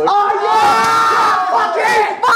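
Several men shouting together in one long, loud yell, followed by a shorter rising shout near the end.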